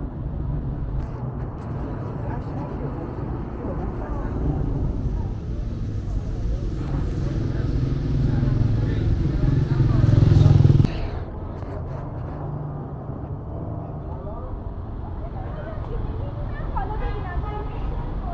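City street ambience: road traffic running steadily, with passers-by talking. A vehicle grows louder over several seconds to a peak about ten seconds in, then cuts off suddenly.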